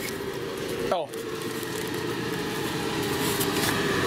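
Window-mounted centrifugal blower fan running steadily with a constant hum, growing louder near the end.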